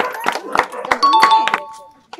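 A two-note chime, a higher note followed at once by a lower one like a doorbell ding-dong, rings out about a second in and dies away within about half a second. Before it come scattered hand claps and voices.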